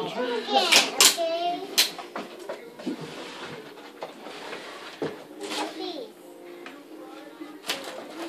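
A young child's voice, vocalizing without clear words, with a few sharp clicks about a second and two seconds in.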